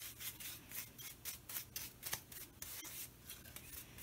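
Bristle paintbrush stroking orange shellac onto a painted wooden wagon wheel: quick, repeated brushing strokes, about four or five a second.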